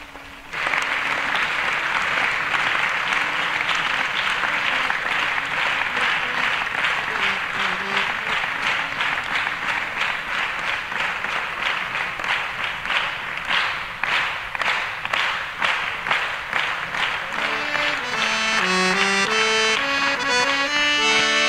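Audience applause, with a harmonium sounding a few soft notes underneath. Near the end the harmonium comes in clearly, playing a melodic introduction to a bhajan.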